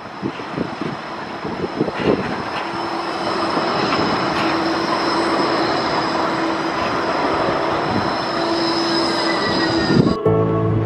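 Gold Coast G:link light-rail tram, a Bombardier Flexity 2, rolling past close by on its street tracks. It grows louder over the first few seconds, then runs steadily, with a low hum and a high thin whine over the noise of its wheels on the rails.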